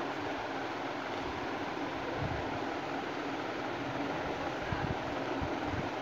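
Steady, even background hiss of room noise, with a few faint low bumps about two, five and five and a half seconds in.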